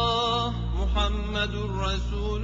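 A male voice chanting an Arabic supplication, holding long drawn-out notes with melismatic turns over a steady low drone.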